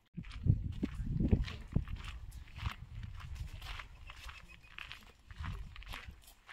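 Footsteps on grass with a low, uneven rumble of wind on the microphone, loudest in the first two seconds.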